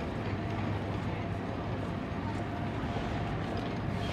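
A San Francisco cable car turning on its hand-pushed wooden turntable: a steady low rumble with a faint thin tone above it, under murmuring voices.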